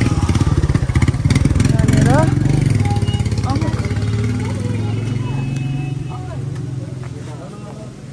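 Motorcycle engine running on the road, loudest in the first few seconds and then fading away, with voices of people talking nearby.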